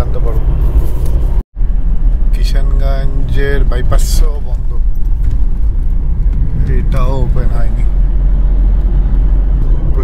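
Steady low rumble of road and engine noise inside the cabin of a Tata Tiago diesel hatchback at highway speed, with a man's voice speaking twice over it. The sound drops out for a moment about a second and a half in.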